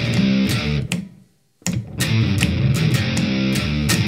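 Les Paul electric guitar played through the VoiceLive 3's octave effect, giving a low, bass-like riff over a steady looper metronome beat. The sound drops out briefly just after a second in, then starts again.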